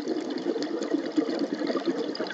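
A scuba diver's exhaled air bubbling out of the regulator underwater: a steady stream of bubbling with many small pops.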